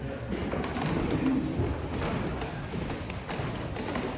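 A congregation getting up from wooden pews: shuffling, rustling and a few light thuds and knocks.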